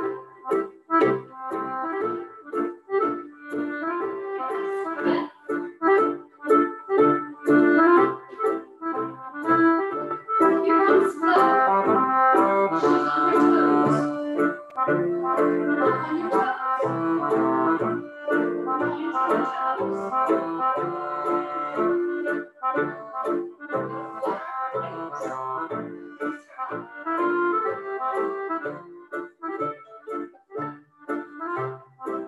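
Scottish country dance music, an accordion-led band tune, played with a strong, even beat.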